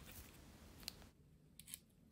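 Near silence with a few faint clicks and taps from fingers handling a small glued balsa strip and fitting it into a model plane's nose block.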